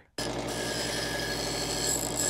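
Bench grinder running, its wheel grinding down the edge of a small circuit board to make it narrower. The sound cuts in abruptly just after the start and holds steady.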